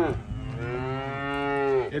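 Holstein cattle mooing: one long moo that rises a little in pitch and drops away just before the end.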